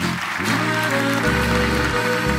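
Slovenian folk-band music: a diatonic button accordion playing with the band. It opens on a sudden crash, and steady low bass notes come in just over a second in.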